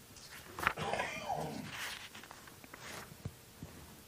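Paper pages of a book rustling as they are leafed through, with a brief squeaky sound that falls in pitch about a second in, then a few soft taps.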